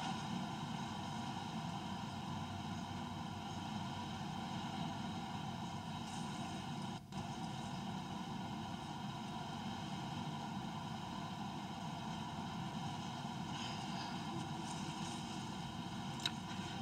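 Steady low hiss of a church's room tone and sound system, with no clear events in it; it briefly drops out about seven seconds in.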